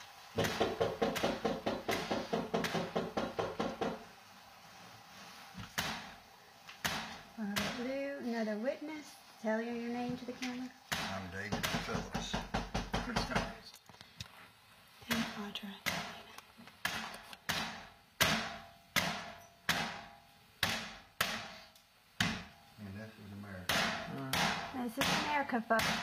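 A door being beaten in with repeated heavy blows: a fast run of strikes at first, then, after a pause filled by voices, a steady series of single blows a little under two a second.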